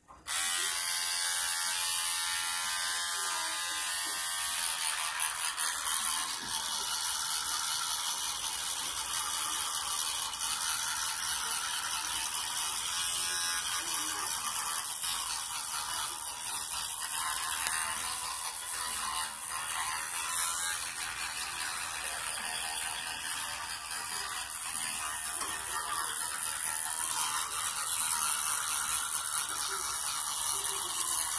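A child's battery-powered electric toothbrush, switched on suddenly and buzzing steadily while brushing teeth.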